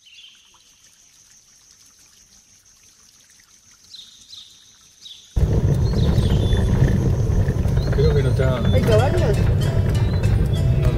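Quiet ambience with a faint steady high whine and a few short chirps, then, about five seconds in, loud low engine and road rumble inside a moving vehicle, with people's voices over it.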